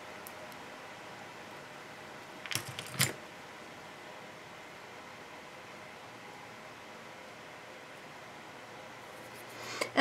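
A few light, sharp clicks of small mosaic tile pieces being handled and set down, about three seconds in, over faint room hiss.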